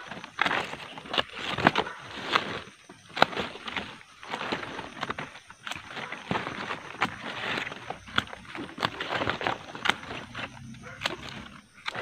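Large Madre de Agua (Trichanthera gigantea) leaves rustling and brushing close to the microphone, with many irregular sharp clicks from scissors snipping its stems and leaves.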